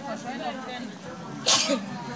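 Several people talking in the background, with one short, loud hissing burst about one and a half seconds in.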